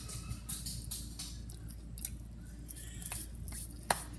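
Scattered small clicks and rustles of Rice Krispies cereal being handled and dropped onto pancakes by hand, with one sharper click near the end.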